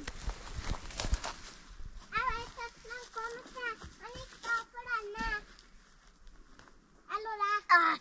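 A young child's high-pitched voice in a run of short, repeated syllables, then another short call near the end. A few knocks and rustles come in the first second or so.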